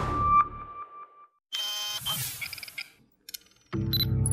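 Electronic logo jingle: a single bright chime that echoes and fades, then a short burst of synthesized electronic effects. Near the end a loud synthesizer intro theme with heavy bass comes in.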